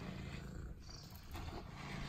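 Domestic cat purring steadily while being brushed, a low continuous rumble, with faint strokes of the grooming brush through its fur.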